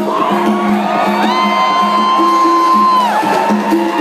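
A live rock band playing with sustained low chords, while a high note slides up, holds for about two seconds and drops away. Crowd cheering and whooping sit under the music.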